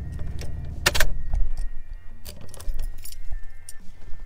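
A ring of keys jangling as the ignition key is handled and turned in a pickup truck's steering column, with a sharp click about a second in and several smaller clicks after, over background music.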